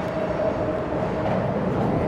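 Steady rumble of traffic from the elevated highway overhead, with a faint steady hum.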